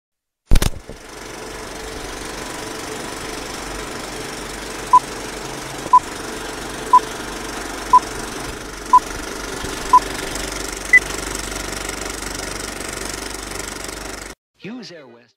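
Film projector running with a steady clatter and film crackle, starting with a sharp click. Over it, a film countdown leader beeps: six short beeps one second apart, then a single higher-pitched beep a second later.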